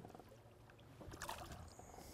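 Faint water splashing as a walleye is let go from a hand into the lake, with a few small splashes and drips, the clearest a little over a second in.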